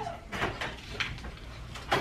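A hotel room door being opened, heard as a couple of short clicks about half a second apart.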